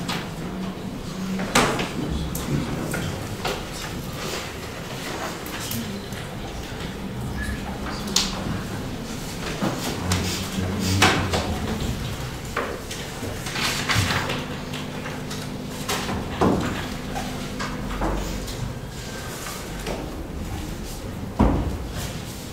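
Meeting-room noise during a silent vote: scattered short knocks and clicks of people shifting at a table, over a steady low room background with faint murmured voices.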